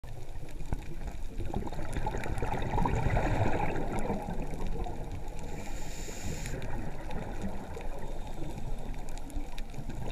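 Underwater ambient noise over a coral reef: a steady low watery rush with scattered sharp clicks, and a brief hiss a little past halfway.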